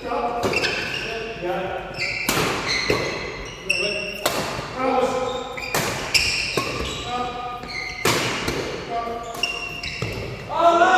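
Badminton doubles rally: a string of sharp racket-on-shuttlecock strikes and footfalls, mixed with short high shoe squeaks on the court floor, echoing in a large sports hall.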